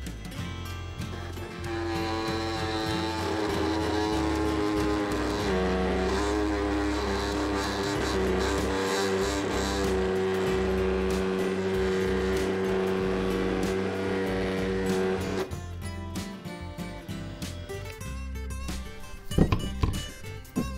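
Bauer 20-volt brushless oscillating multi-tool running on its slowest speed, its blade buzzing steadily against wood. It starts about two seconds in, drops a little in pitch a few seconds later and cuts off sharply after about fifteen seconds. At this speed the blade is barely cutting into the wood.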